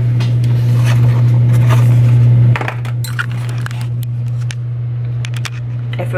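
A metal fork clicking and scraping against a plastic meal-prep tray during eating, in scattered sharp clicks. Under it runs a steady low hum, the loudest sound, which drops a little about halfway through.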